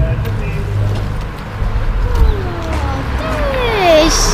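Low, steady rumble of street traffic, with a child's voice making drawn-out calls that fall in pitch over the last two seconds.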